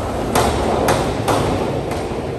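A diver hitting the water off a 1 m springboard with a splash about a third of a second in, followed by three more sharp knocks over the next second and a half.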